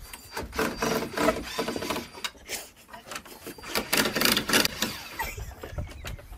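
A cordless drill driving screws into a wooden railing, in two bursts: one starting about half a second in and lasting over a second, and a shorter one about four seconds in.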